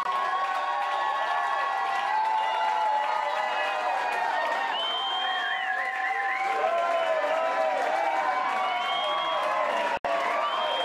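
A pub crowd cheering, whooping and clapping, with many voices yelling held calls over steady applause and a wavering trill about halfway through.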